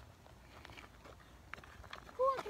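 Faint, scattered light scuffs and ticks of footsteps on playground wood chips.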